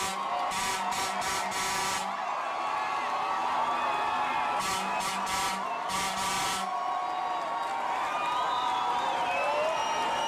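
A large crowd of football fans cheering and shouting, many voices overlapping. Twice, near the start and again about five seconds in, a harsh buzzing noise pulses for about two seconds.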